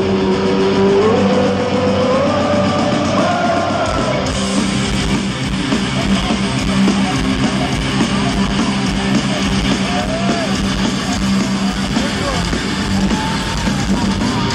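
Live heavy rock band playing in an arena, recorded from the crowd: electric guitars with a melody that bends in pitch over a steady low bass note, and the drums coming in about four seconds in.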